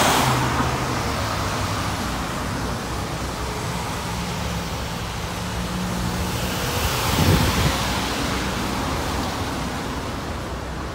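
Road traffic on wet tarmac: a car passes close at the start with a hiss of tyres, then steady traffic noise with engines humming, and another vehicle passes about seven seconds in.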